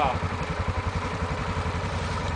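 ATV engine running at low, steady revs with an even pulsing note as the quad crawls through a muddy water hole.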